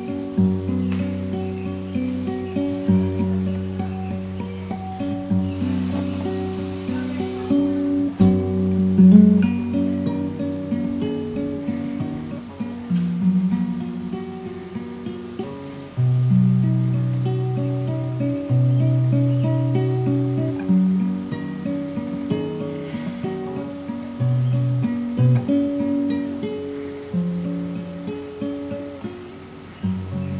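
Solo nylon-string classical guitar played fingerstyle: a picked melody over sustained bass notes, with frequent note attacks throughout.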